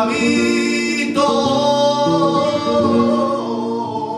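Flamenco seguiriya: a male singer's long, wavering held vocal lines over acoustic flamenco guitar, the melody shifting pitch about a second in and again near the end.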